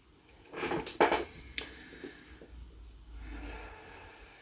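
A woman's breath, a soft rushing sound about half a second in, with two small clicks shortly after, a little over a second in and again about half a second later.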